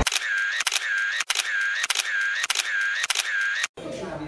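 Camera shutter sound effect, a click-and-whir repeated about every 0.6 seconds, six times, cutting off suddenly near the end.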